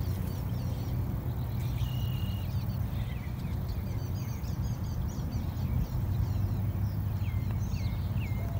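Birds chirping and whistling in short phrases: one held whistle about two seconds in, a run of quick chirps around the middle, and a few hooked notes near the end. Under them runs a steady low rumble.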